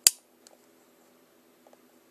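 A single sharp, loud click, like a small hard object knocking, then a couple of faint ticks, over a faint steady low hum.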